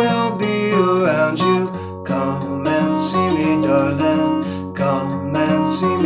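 Mahogany acoustic guitar strummed in a steady chord rhythm, with the open strings ringing between strokes.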